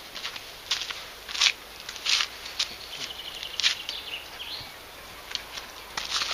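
A handful of short, irregular scuffing and rustling noises over a steady outdoor background.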